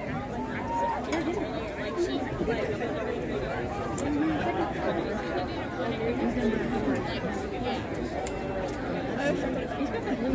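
Overlapping, indistinct chatter of many people talking at once, steady throughout, with no single clear voice.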